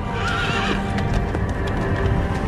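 A horse whinnies briefly about half a second in, then hoofbeats over soundtrack music with a low rumble.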